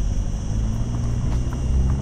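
Cicadas buzzing from the trees in one steady, unbroken high-pitched drone, over a low rumble.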